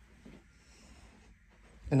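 Quiet room tone with only faint indistinct sounds, ending in a single short spoken word.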